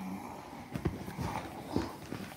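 Light rustling and a few soft knocks from something moving under a blanket on a carpeted floor.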